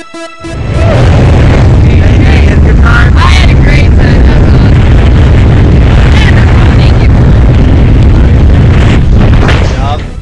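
Loud wind buffeting and rumbling on the camera microphone during a skydive, starting about a second in and cutting off just before the end, with faint shouts over it.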